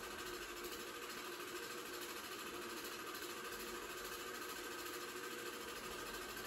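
Home-movie film projector running with a steady mechanical whir that does not change.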